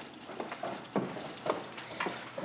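Footsteps going quickly down stairs, a short knock about every half second.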